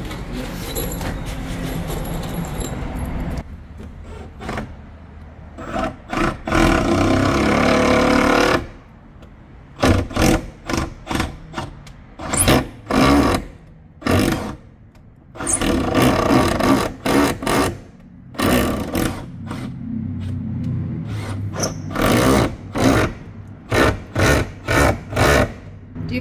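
A cordless drill drives stainless steel screws into window trim in many short trigger bursts, worked back and forth so the soft screws don't strip or twist off.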